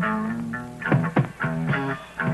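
Rock band playing: electric guitar chords struck in a repeated pattern over bass, with a few sharp drum hits about a second in.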